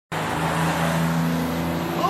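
A motor vehicle's engine running steadily with a low hum, over a dense street-traffic noise.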